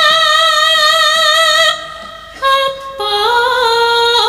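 A sinden (female Javanese singer) singing into a microphone, holding long notes with vibrato. The phrase breaks off a little under two seconds in, and a new one begins about three seconds in, climbing in steps.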